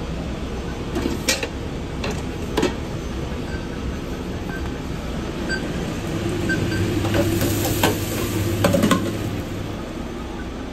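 Fast-food kitchen noise: a steady hum of equipment with a few sharp clicks and knocks from handling. From about six seconds in the hum grows louder and there is some clattering.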